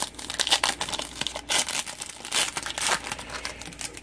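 Hockey trading-card pack wrapper crinkling and rustling in irregular bursts as the pack is opened and the cards are pulled out and handled.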